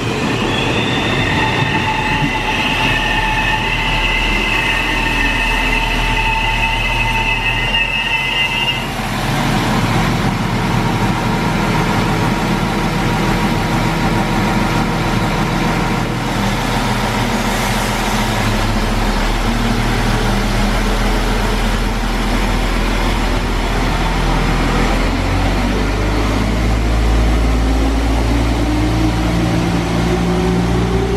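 Polregio SA138 diesel multiple unit at a station platform. For the first nine seconds there is a high, steady squeal of train wheels. After that its diesel engines run, rising in pitch near the end as it accelerates.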